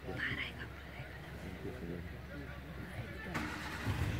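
A vehicle engine running with a steady low hum under hushed, murmured voices. About three seconds in, a broader hissing noise comes in, as if the vehicle starts to move.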